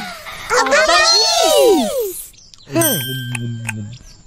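Several children's voices crying out together in cartoon dialogue, many pitches rising and falling at once, then a single voice near the end with a faint steady ringing tone behind it.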